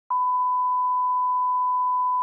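1 kHz line-up test tone played with colour bars: one steady, unchanging pitch that starts a moment after the beginning.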